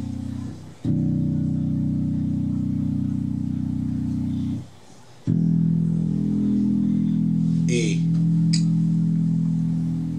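DR Custom Basses Jona five-string bass guitar, plucked and left to ring: one long sustained note from about a second in, stopped short near four and a half seconds, then a second long note ringing from just after five seconds on.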